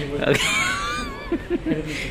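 People laughing: a high, squealing voice glides up and down for about a second, then a few short bursts of laughter near the end.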